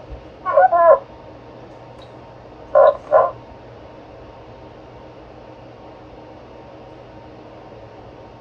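Steady hum of the measurement instruments' cooling fans in a small lab. Over it come two short, loud voice-like sounds, one about half a second in and a quick double one about three seconds in.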